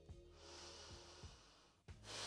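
Near silence: one soft, long breath out, lasting about a second and a half, over faint background music, with a brief click near the end.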